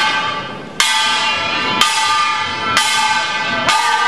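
Kkwaenggwari, the small brass hand gong of a poongmul troupe, struck five times at about one stroke a second, each stroke ringing bright and metallic and dying away before the next.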